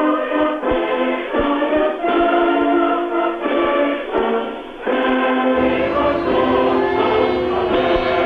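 Choral music: a choir singing slow, held notes that change every half second or so. About five and a half seconds in, a low rumble joins underneath.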